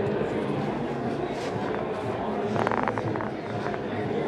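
Steady background chatter of many voices in a large room, with a short run of sharp clicks about two and a half seconds in.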